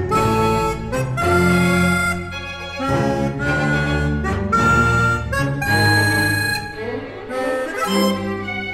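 Harmonica playing with a chamber orchestra in a concerto: loud sustained notes and chords in phrases of about a second, each broken off by a short gap.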